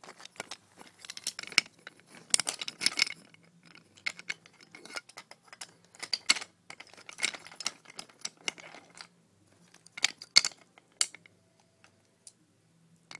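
Wooden toy railway pieces and cargo clattering and knocking against each other and the wooden track as they are handled and moved by hand: an irregular run of clicks and clacks in clusters, with a few sharper knocks.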